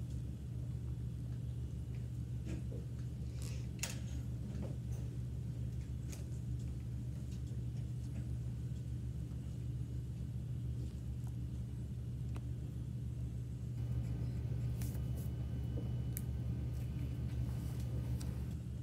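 Steady low room hum, with a few faint clicks.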